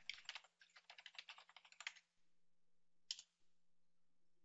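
Faint, quick typing on a computer keyboard for about two seconds, then a single key press about three seconds in as the command is entered.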